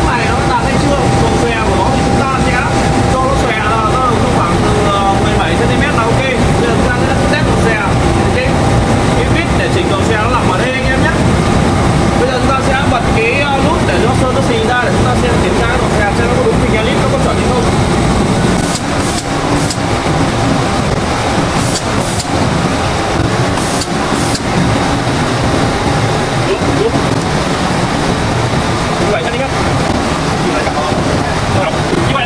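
Spray booth running: a steady loud rushing of its water curtain over a low machinery hum, with people talking indistinctly. About two-thirds of the way in, a few short sharp hisses of compressed air from the automatic spray heads test-spraying paint.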